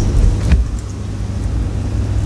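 Steady low rumble of room background noise, with a single click about half a second in.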